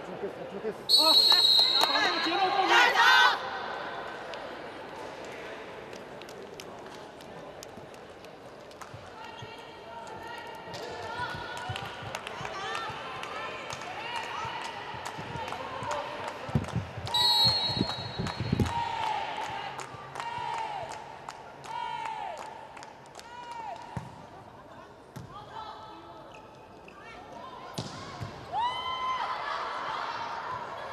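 Indoor volleyball arena sound during a timeout: hall noise and voices, with a loud shrill passage about a second in and again briefly midway, and short squeaks and thuds from the court.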